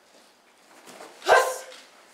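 A single short, sharp kiai shout from a karate performer about a second in, with a thump at its loudest point.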